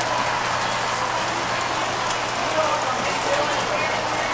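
Model trains running on a large layout: a steady whir and rattle of wheels on track, under a background murmur of voices.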